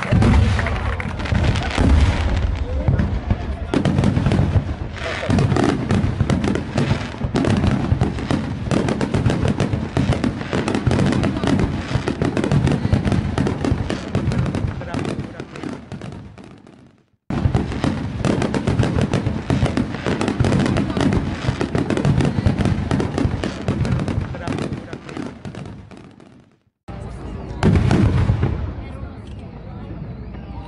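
Aerial fireworks display: a dense, irregular run of bangs and crackles from bursting shells, with crowd voices underneath. Twice, about two-thirds of the way in and again near the end, the sound fades away and then starts again abruptly.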